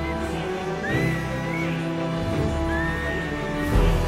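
Music with sustained chords under a high lead melody. The melody slides up into a long held note three times, about once every one and a half seconds.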